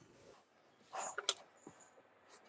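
Faint handling sounds of tailor's shears being taken up and set against the fabric: a brief soft rustle about a second in, then a couple of small metal clicks.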